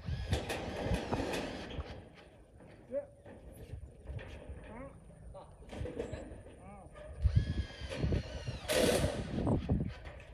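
Knocks and bangs on corrugated metal roofing sheets as roofers step and work on them, with voices talking now and then.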